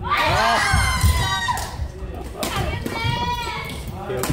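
Players shouting and exclaiming in high voices that rise and fall in pitch: one long outburst at the start and another shorter one about two and a half seconds in. Scattered thumps of feet on the court come through beneath them, in the echo of a large gym hall.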